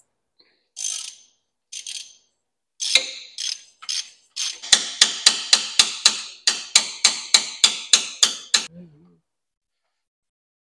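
Hand socket ratchet being swung back and forth, its pawl clicking on each stroke: a few slower strokes at first, then an even run of about four clicks a second for some four seconds, which stops shortly before the end. The ratchet is backing out a bolt that holds the engine in the ATV frame.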